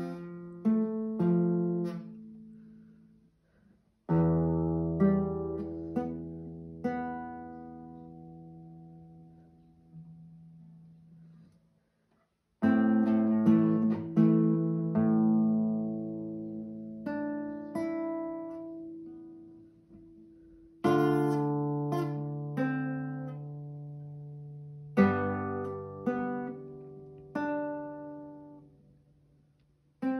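Classical nylon-string guitar played slowly: plucked chords and single notes left to ring out, in phrases broken by two short silent pauses.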